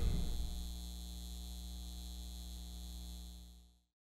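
Steady low electrical hum of a neon sign, with a faint high whine above it, as the last of the music dies away. The hum fades out shortly before the end.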